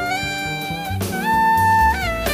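Jazz quintet of alto saxophone, archtop guitar, piano, double bass and drums playing. A melodic lead line with a long held note in the second half runs over a low bass line.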